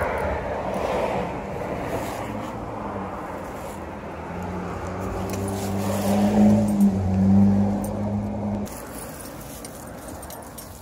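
A motor vehicle's engine hum that grows louder about five seconds in, is loudest around six to seven seconds, and cuts off suddenly near the end.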